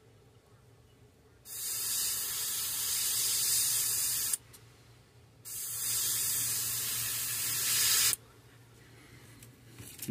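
Airbrush spraying paint in two bursts of about three seconds each: a steady, high air hiss that starts and stops abruptly, with a short pause between.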